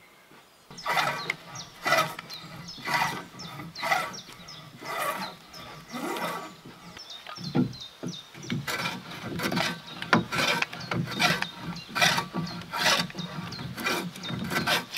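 Hand plane shaving the top of a squared timber log in repeated rasping strokes, about one a second at first and quicker, nearly two a second, in the second half.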